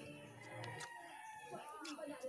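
A rooster crowing, faint, over the quiet sounds of a yard.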